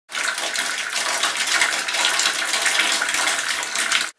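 Tap water running steadily into a plastic bin standing in a bathtub, filling it.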